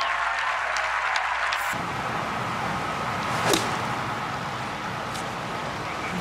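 Crowd applause and outdoor hiss, then after a cut a single sharp crack of a golf club striking the ball about three and a half seconds in.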